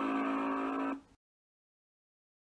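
A steady, buzzy electronic tone with many overtones, held on one pitch, that cuts off suddenly about a second in, leaving dead silence.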